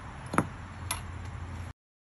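Two sharp metallic knocks about half a second apart, the first the louder, as a long-handled metal paver tool strikes the concrete pavers; the sound cuts off suddenly soon after.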